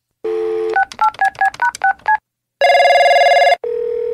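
A telephone call being placed: a brief dial tone, then about seven quick touch-tone (DTMF) key beeps, then the line ringing with a loud buzzing tone for about a second followed by a shorter steady tone.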